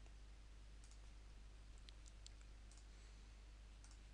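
Near silence: a steady low hum with a few faint, scattered computer mouse clicks.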